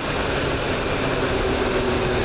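Motorcycle on the move at steady speed: wind and road noise rushing over the microphone, with the engine running underneath as a faint steady tone from about halfway through.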